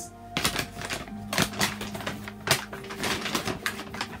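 An irregular run of clicks and knocks as items are handled and set down on a table, over steady background music.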